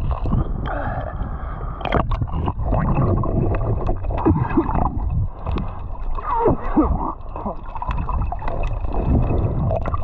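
Sea water gurgling and sloshing over a camera held at the surface and then dipped under: a muffled, continuous underwater rumble with bubbling and splashes.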